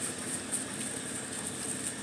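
Steady outdoor background noise, an even hiss with a few faint brief rustles.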